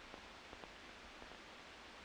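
Near silence: a faint, steady background hiss with a few faint ticks.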